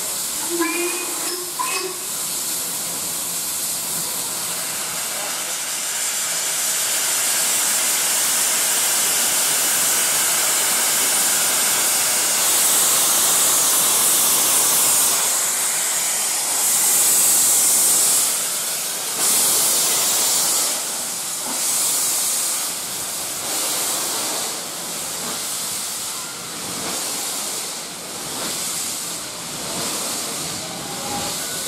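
Steam locomotive 46521, an LMS Ivatt Class 2MT 2-6-0, standing at a platform and hissing steam loudly and steadily. In the second half the hiss swells and falls in waves.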